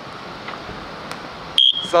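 Steady background noise, then about one and a half seconds in a short, high, steady whistle blast signalling the kick-off.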